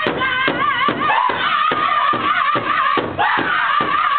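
Powwow drum group singing in high, wavering voices over a large shared hand drum struck together in a steady beat, about four strokes a second.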